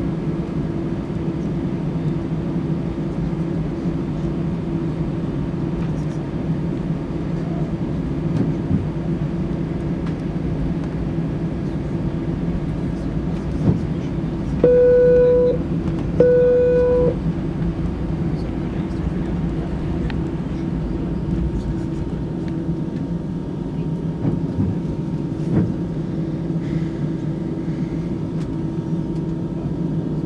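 Steady hum inside an Airbus A320 cabin as it taxis, its engines at idle. About halfway through come two flat beeps of the same pitch, each about a second long, the loudest sounds in the stretch.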